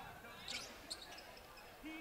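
Faint live game sound in a basketball gym: a couple of soft basketball thumps during a drive to the hoop, with faint voices in the background.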